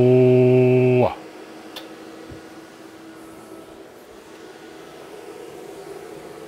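A man's drawn-out "hellooo" into a radio microphone, held on one steady pitch and ending about a second in: a voice test keying the radio to drive the amplifier for a power reading. After it only a steady low hum with a faint hiss remains.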